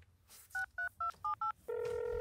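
A phone keypad dialing: five quick two-tone keypress beeps, then a steady ringing tone starts near the end as the call goes through.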